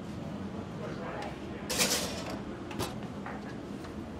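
An oven being loaded: the oven door and rack are handled as a skillet goes in, with a short metal scrape about two seconds in and a click about a second later.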